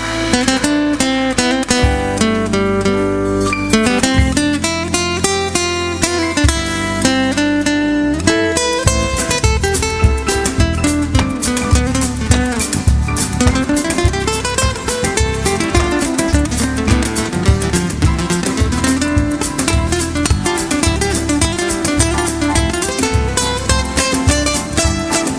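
Live band playing an instrumental rumba passage in flamenco style: acoustic guitar out front over bass, drums and percussion, with a steady, driving beat.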